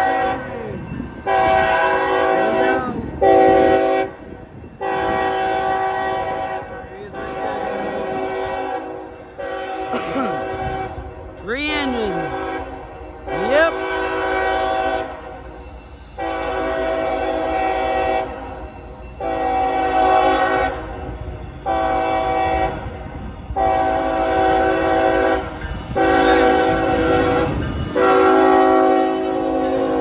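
Freight diesel locomotive's multi-note air horn sounding a long run of blasts for a grade crossing as the train approaches, each blast a chord lasting a second or two with short breaks between.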